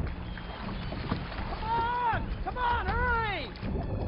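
Motorboat running on open water, its outboard engine and the water giving a steady low rumble. About halfway through, two bursts of high, rising-and-falling cries sound over it, the second a quick overlapping series.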